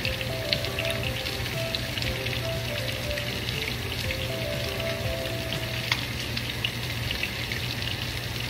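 Hot oil frying with a steady crackle and sizzle, under a soft melody of background music.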